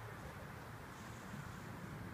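Quiet outdoor background noise: a faint, steady low rumble with no distinct event.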